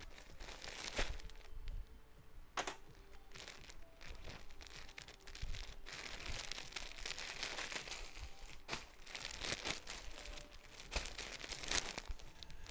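Plastic clothing bags rustling and crackling as a string-tied bundle of them is untied and handled, with a few sharper snaps.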